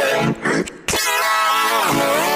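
A man's voice singing wordlessly in a deliberately horrible style: a short sung sound, a breathy pause, then one long held note that sags in pitch near the end.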